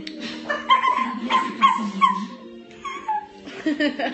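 A series of short, high yips and whimpers like a small dog's, about five in quick succession, then one falling whine near the end.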